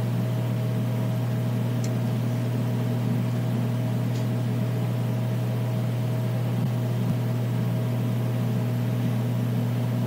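Steady low electrical hum with a faint higher tone and hiss: the background noise of the narration recording. Two faint ticks come about two and four seconds in.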